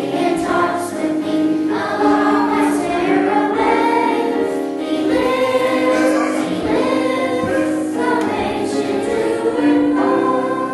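A church choir singing, many voices holding long notes together and moving from chord to chord.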